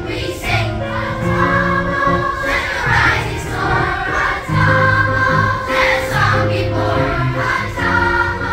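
Large children's choir singing a song, with long held notes.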